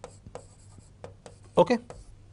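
Pen strokes on an interactive touchscreen display as words are hand-written: a quick series of short taps and scratches, about three a second.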